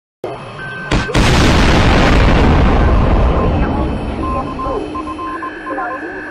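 Dramatic intro sound effects: a sharp hit about a second in sets off a loud boom that dies away over the next few seconds. Steady electronic tones and a broken series of beeps run through the second half.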